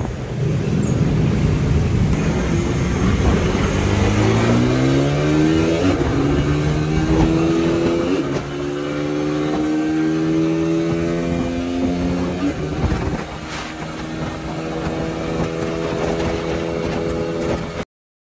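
Suzuki Raider 150's single-cylinder four-stroke engine under hard acceleration through the gears. Its pitch climbs, drops briefly at each of about three upshifts, then holds steady near top speed in fifth gear, over a steady rush of wind. The sound cuts off suddenly near the end.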